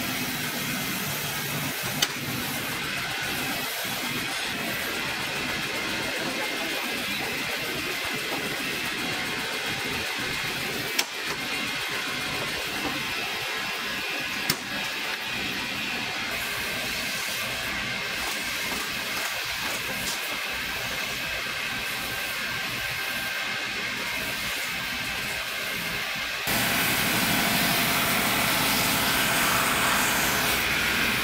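Boot finishing machine's spinning sanding wheels and belt grinding against the leather edge and sole of a work boot, a steady hiss with a few sharp clicks. It gets louder near the end.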